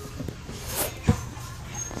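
A large inflatable rubber exercise ball being bounced and batted around, with one sharp thump about halfway through.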